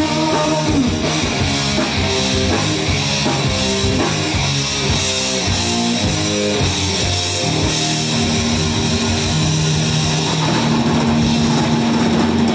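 Live rock band playing an instrumental passage: electric guitars run through a riff of quick notes over bass guitar and drum kit, with a long held note coming in about two-thirds of the way through.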